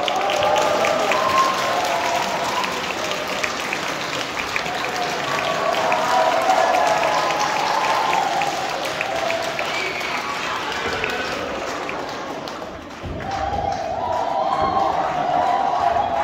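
Audience applauding, many hands clapping at once, with voices calling out over it. It starts suddenly, dips briefly about 13 seconds in, then swells again.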